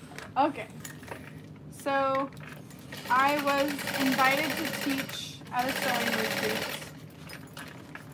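Juki industrial sewing machine stitching in two short runs, about three seconds in and again around six seconds, the needle going fast and even. A woman's voice sounds briefly over the machine.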